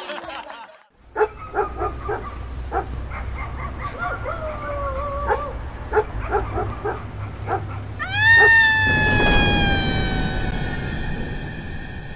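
A dog barking repeatedly over a low steady rumble, with a brief whine in the middle, then one long howl about eight seconds in that slowly falls in pitch and is the loudest sound.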